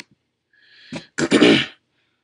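A man's short in-breath, then one loud, explosive burst of breath about half a second long: a sneeze or a hard cough.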